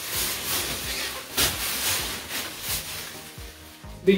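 Thin plastic produce bag rustling and crinkling as it is handled, over background music.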